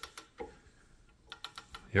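Ratchet and pawl of a Dake No. 1-3/4 ratchet leverage arbor press clicking as the handle is worked to bring the ram down: a few sharp clicks, then a quicker run of clicks in the second half.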